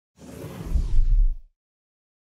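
Whoosh sound effect for an animated channel logo, swelling with a deep low boom underneath that is loudest about a second in, then cutting off abruptly about one and a half seconds in.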